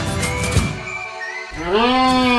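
Background music, then about one and a half seconds in a horn-like buzzing tone starts, rising in pitch: a long tube from a portable pickleball net frame being blown into like a horn.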